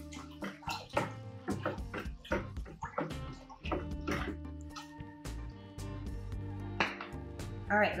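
Background music, with water sloshing as a hand stirs nutrient solution in a plastic five-gallon bucket.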